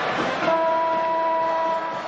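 Basketball arena horn sounding one steady blast of about a second and a half, starting about half a second in, over crowd noise.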